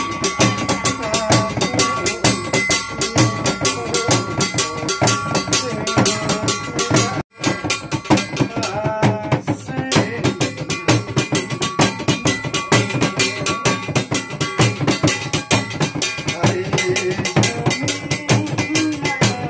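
Dhyangro, the Nepali shaman's frame drum, beaten fast and steadily with a curved stick at about five strokes a second, with steady ringing tones over the beat. The sound drops out briefly about seven seconds in, then resumes.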